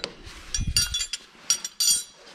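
Steel hand wrenches clinking against each other and against a steel hydraulic coupler as they are handled: several short metallic clinks with a brief ring, about halfway through and again near the end, the last the loudest.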